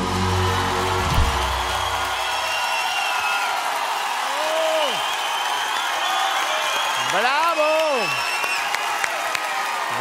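A studio audience applauding and cheering as a song ends: the band's last low chord rings out and stops about two and a half seconds in, under a steady wash of clapping. Loud shouts rise out of the crowd about four and a half and seven seconds in.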